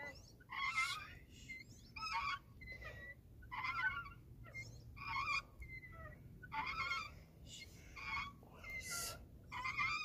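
A swing's hangers creaking and squeaking over and over as the empty wooden seat sways back and forth. The squeals come roughly once a second and waver in pitch.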